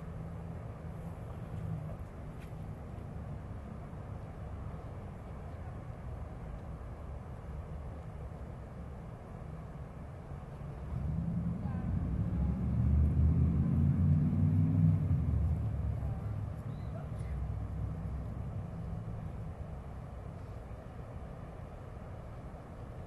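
Steady low rumble of outdoor city noise. About halfway through a passing vehicle swells in, with a slightly rising pitch, and fades over the next few seconds.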